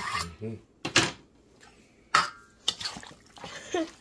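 Metal spoon stirring a pot of stewed pork, knocking against the pot: two sharp clinks about a second apart, the second briefly ringing, then lighter taps.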